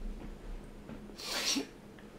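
A single short, breathy burst of air from a person about a second and a half in, otherwise quiet.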